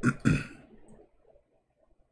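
A man clearing his throat once: a short, rough burst in the first half second.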